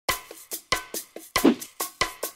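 Percussive intro music: a quick rhythm of sharp, ringing hits, about four or five a second.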